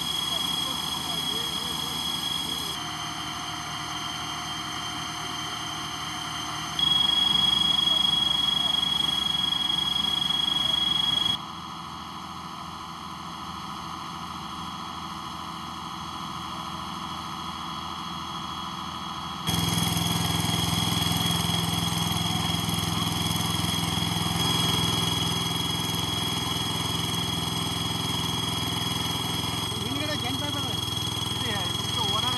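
Location sound from fire-scene footage, cut together from several shots: a steady engine-like drone and hiss with a thin steady whine above it. The sound changes abruptly at each cut and is loudest from about 7 to 11 seconds in.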